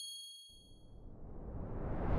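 Animated-logo sound effect: a bright metallic chime rings and fades away. From about half a second in, a whoosh swells up, rising in loudness.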